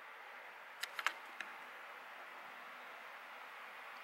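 Quiet room hiss with three or four light clicks about a second in, from fingers handling and turning a vinyl doll head.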